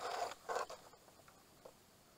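Two short splashes of muddy floodwater close to the kayak, about half a second apart.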